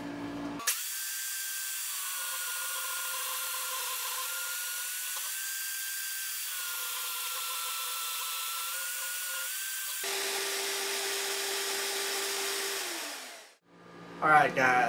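Vertical bandsaw cutting 5160 leaf-spring steel: the blade runs steadily through the cut with a hiss and a high whine. About ten seconds in the sound jumps to a lower steady tone, which drops in pitch and dies away near the end.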